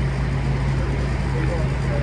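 Steady low hum and running noise inside a light-rail car slowly moving along a station platform.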